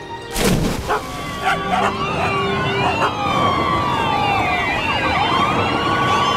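A loud impact about half a second in, then several sirens wailing at once, their rising and falling tones overlapping.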